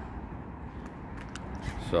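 Outdoor background noise: a steady low rumble with a few faint clicks, and a man's voice starting right at the end.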